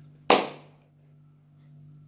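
A single sharp hand clap about a third of a second in, dying away within a few tenths of a second. A faint, steady low hum runs underneath.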